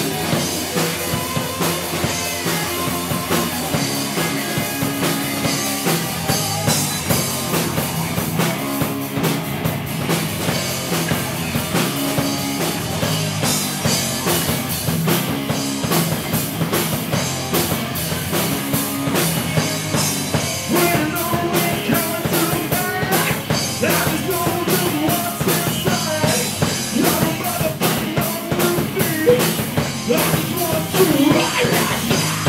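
Live rock band playing: two electric guitars, a bass guitar and a Tama drum kit.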